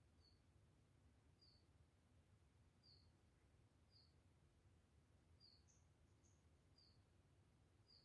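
Near silence: low room hum with faint, short high chirps repeating about once a second, and a couple of higher chirps partway through.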